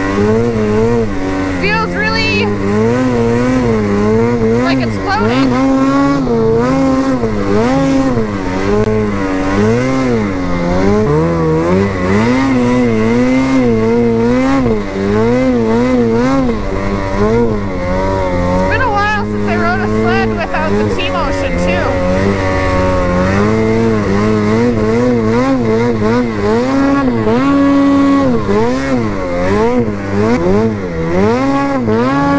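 Lynx Boondocker snowmobile's two-stroke engine revving up and down over and over as the throttle is worked while riding through deep powder.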